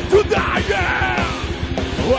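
Live power metal band playing loud, with fast drumming and distorted electric guitar under a yelled vocal line whose pitch slides downward about a second in.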